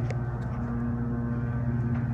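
Mitsubishi hydraulic elevator's pump motor running as the car travels up: a steady low hum with a few fainter, higher steady tones.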